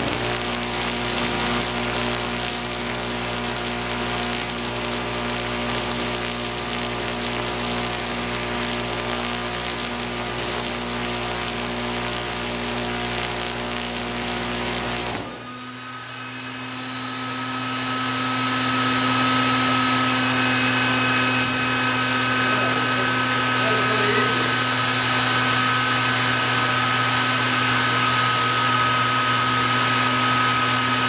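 Vacuum tube Tesla coil (3CX10000A3 triode) firing bushy sparks into the air: a loud, even buzzing crackle with a steady hum in it, which cuts off suddenly about halfway through. A steady electrical hum carries on after the sparks stop.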